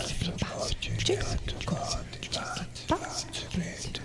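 Whispered, breathy vocal sounds into a microphone in short puffs with a few brief pitch slides, over a steady low hum.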